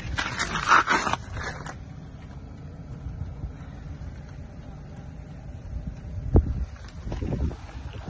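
Handling noise from a phone moved around close to the ground: scratchy rustling in the first second and a half, then a low rumble of wind on the microphone, with a single thump about six seconds in.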